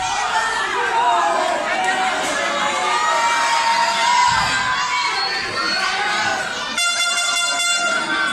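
Arena crowd shouting and cheering, many voices at once. Near the end an air horn sounds one steady, loud blast lasting about a second.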